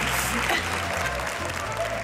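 Studio audience applauding over background music, the applause slowly easing off.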